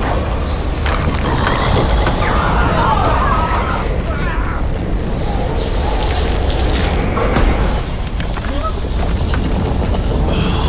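Animated-film soundtrack: a dense, continuous mix of deep rumbling booms and mechanical clattering effects, with music underneath.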